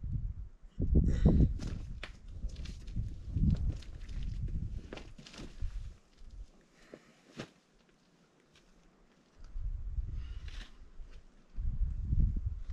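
Gusts of wind rumbling on the microphone, easing off for a few seconds midway, with scattered scuffs and taps from a climber's shoes and hands on sandstone as he pulls onto the boulder.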